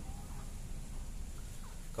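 Faint clucking calls of domestic fowl, a few short separate calls over a steady low rumble.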